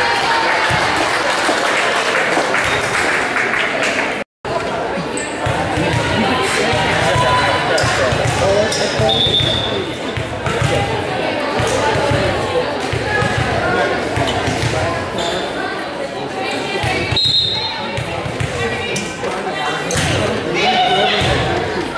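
Noise of a volleyball match in a gym. Spectators and players shout and cheer over one another, and the ball repeatedly slaps off hands and thumps on the hardwood floor, all echoing in the large hall.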